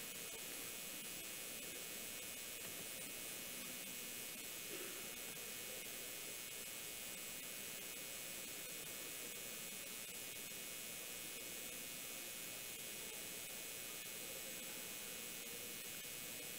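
Faint steady hiss, electronic noise with a faint hum under it, and no distinct sound events.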